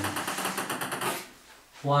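Table tennis ball bouncing on the table in a quick rattle of small, fast taps that dies away about a second in as the ball comes to rest.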